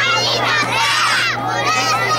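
A group of children's voices raised together, many high voices overlapping, over a steady low hum.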